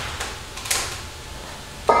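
A metal scoop scraping through green beans in a large stainless-steel basin, with one sharp clank less than a second in.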